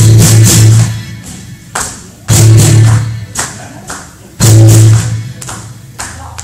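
Live church band of violin and acoustic guitar playing three loud held chords about two seconds apart, each stopping short with a quieter stretch between: the stop-time closing hits of a gospel song.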